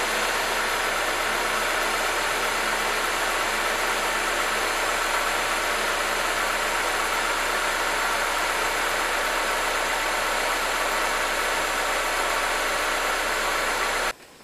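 Honda 2.3-litre four-cylinder engine idling steadily, heard up close in the engine bay, with its ignition coil firing.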